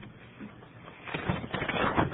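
Bible pages rustling as they are leafed through to find the passage, a papery rustle that starts about a second in.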